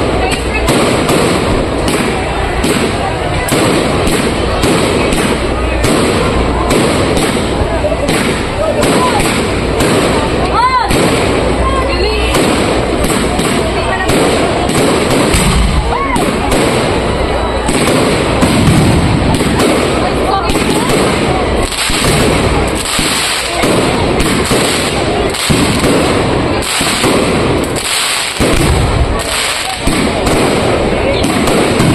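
Fireworks display: a dense, continuous barrage of shell bursts and crackling, with a few whistling glides around the middle.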